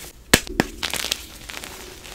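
Blocks of fresh and reformed gym chalk being crushed in bare hands. A sharp crack comes about a third of a second in and another just after. A quick run of crumbly crunches follows, then quieter powdery rustling.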